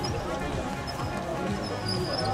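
Hoofbeats of a trotting pony on grass, dull irregular thuds, over background music and faint voices.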